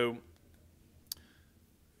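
A single short, sharp click about a second in, over quiet room tone, just after a spoken word trails off.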